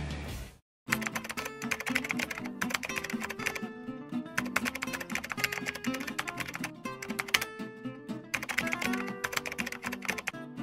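Rapid typing on a computer keyboard over light background music, starting about a second in after a brief silence.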